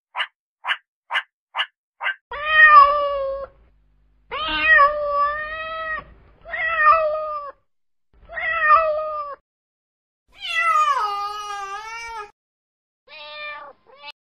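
Domestic cat meowing repeatedly: five drawn-out meows about a second apart, the fifth falling in pitch, then a short one near the end. The first two seconds hold a run of short, evenly spaced high chirps.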